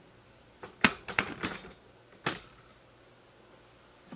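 Handling noise from a camera being moved and set in place: a quick run of clicks and light knocks about a second in, then one more sharp click a little after two seconds.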